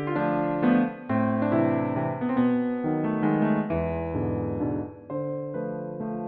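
Instrumental piano music: chords and notes played in succession, each ringing and fading, with a brief dip in loudness about five seconds in.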